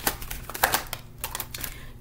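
Tarot cards being handled and shuffled by hand: a run of quick, irregular clicks and flicks.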